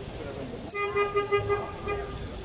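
A car horn sounding one steady-pitched toot of about a second and a half, starting under a second in and pulsing a few times in loudness, over the hum of street traffic.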